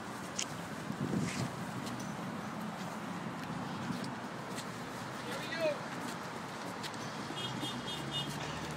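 Indistinct voices of people close by, over a steady outdoor background noise, with a few faint clicks.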